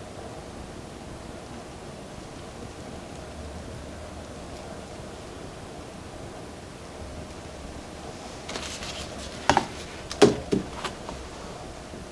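Low steady room hiss. About eight and a half seconds in comes a brief rustle, then a quick run of four or so sharp clicks and knocks, the loudest a little after ten seconds. These are small plastic action-figure parts being handled and fitted.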